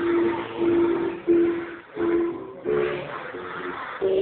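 A large group of schoolchildren singing a song together in unison, one melody of held notes with short breaks between phrases.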